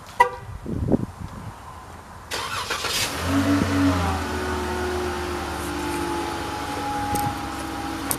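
A short chirp just after the start; then, about three seconds in, a Dodge Charger's engine starts up and settles into a steady idle whose hum drifts slightly lower as it goes.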